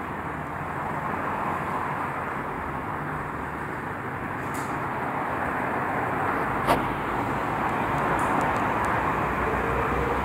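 Steady hum of distant city road traffic, slowly growing louder, with a single sharp click about two-thirds of the way through.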